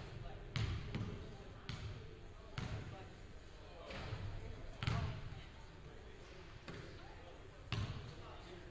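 Basketballs bouncing on a hardwood gym floor: about five separate thuds, irregularly spaced, each with a short echo in the hall.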